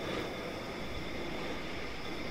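Steady background rumble and hiss with a few faint high tones held throughout, no distinct events.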